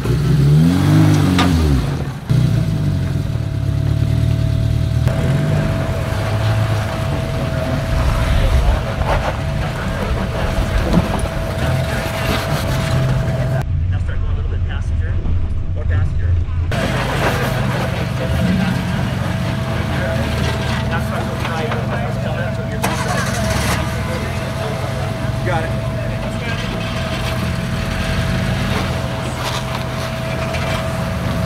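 Suzuki Samurai rock crawlers' engines working at low speed as they climb over granite ledges, the revs rising and falling near the start, then holding steady under load.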